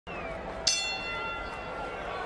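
Boxing ring bell struck once about two-thirds of a second in, ringing on and fading over about a second, the signal that the round is starting, with arena crowd noise beneath.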